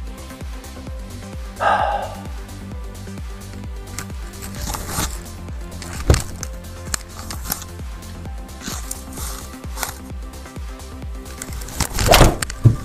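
Background music with a steady beat, with a brief louder sound about two seconds in and a few sharp knocks, the clearest about six seconds in.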